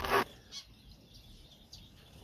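Small aviary finches chirping faintly in short high calls, after a brief sharp noise at the very start.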